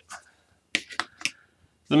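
About four short, light taps and clicks as a model rocket is picked up and set aside on a cutting mat.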